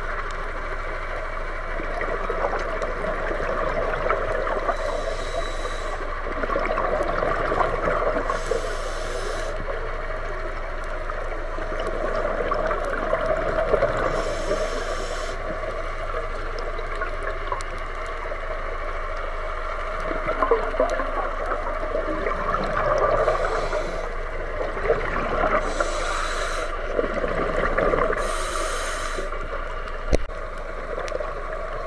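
A scuba diver breathing through a regulator underwater: continuous bubbling and gurgling, broken by six short hissing breaths a few seconds apart.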